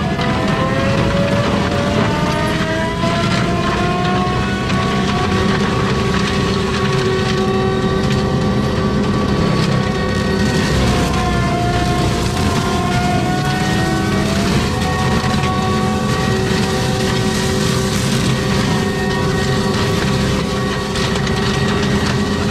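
ASV RT-120F compact track loader running a Prinoth M450s forestry mulcher head, its diesel engine and hydraulically driven drum whining steadily as the drum grinds through brush. Its pitch dips and recovers a few times under the load.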